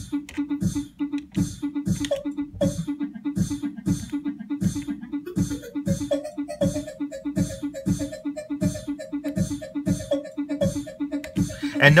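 A looping beatboxed drum pattern (mouth-made kick, snare and hi-hat samples) played back by an ER-301 sound computer's sample players in a steady rhythm. A pitch-shifting delay is dialed in on the hi-hat, and from about five seconds in it adds pitched, repeating echoes to the beat.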